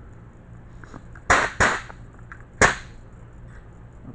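Three sharp clacks from handling steel tools and the spindle, two close together about a second in and a third a second later.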